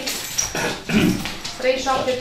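Indistinct speech: people talking at a table, with no clear words.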